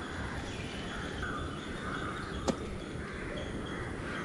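Outdoor ambience: a steady background hiss with faint bird calls, and one sharp click about halfway through.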